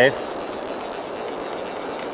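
River rapids rushing in a steady, even wash of water noise.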